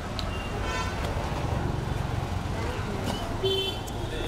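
Street traffic noise: a steady low rumble, with two brief high-pitched horn toots, one about half a second in and one shortly before the end.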